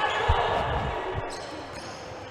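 A futsal ball thudding on a wooden indoor court, a couple of dull thumps over the steady hum of the sports hall, which fades toward the end.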